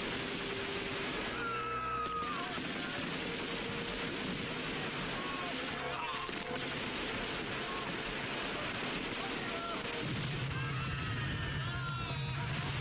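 Battle sound effects: a dense, continuous din of rifle fire and explosions, with men's shouts breaking through now and then. A low, sustained music tone comes in near the end.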